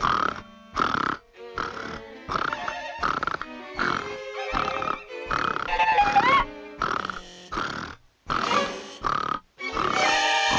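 Cartoon snoring from the sleeping king, a string of loud grunting snores about once a second, over orchestral underscore music.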